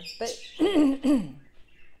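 A woman clearing her throat, a two-part voiced "ahem" about half a second in, just after she says a short word.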